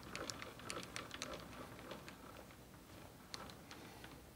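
Faint light clicks and ticks from a metal lathe's compound rest feed handle being turned by hand, moving the compound slide along a dial indicator. The clicks come thickly for about the first second and a half, then more sparsely.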